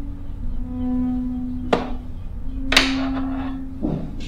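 A film score of long, held low notes plays throughout. Over it come a sharp click a little before the halfway point and a louder clatter near three seconds in, fitting a pair of metal manual hair clippers being set down on a wooden barber's counter, with a soft thump just before the end.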